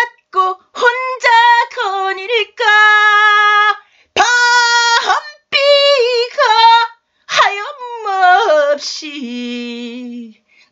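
A woman singing a slow Korean ballad unaccompanied, in long held phrases with vibrato, broken by short silent breaths. The last phrase, near the end, is sung low and soft.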